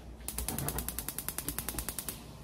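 Gas hob's electric spark igniter clicking rapidly, about a dozen even clicks a second, as the burner knob is held turned and the burner lights.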